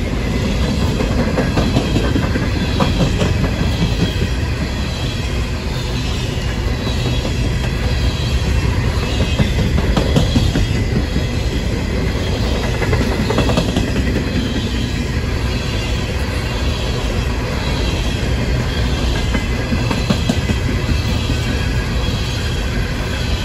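Norfolk Southern coal hopper cars rolling past close by: a steady, heavy rumble of steel wheels on rail with scattered clicks and clanks.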